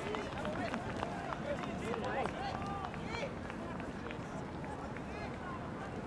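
Soccer players calling out to each other across the pitch during play: faint, scattered voices over a steady outdoor hum, with light knocks now and then.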